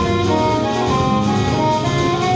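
A high school jazz big band playing live: saxophone, trumpet and trombone sections sounding held notes together in chords over the rhythm section.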